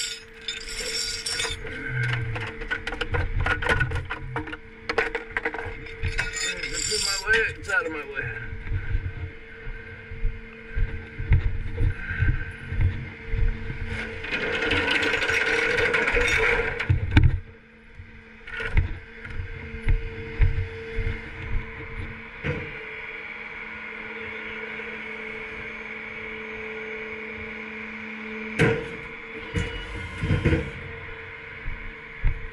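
Steel tow chain and hooks clanking and rattling against a wrecked car's front end in a run of sharp knocks, over a steady hum from the flatbed tow truck. About halfway a rushing noise swells for a few seconds, then the hum carries on with a few more knocks.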